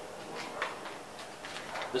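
A few faint clicks and light knocks of metal hand tools being handled on a wooden workbench. A man's voice starts right at the end.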